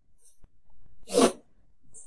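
A short, sharp breathy noise from a person, about a second in, lasting under half a second.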